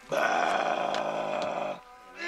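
One long vocal call held at a steady pitch for nearly two seconds, starting just after the beginning and stopping shortly before the end.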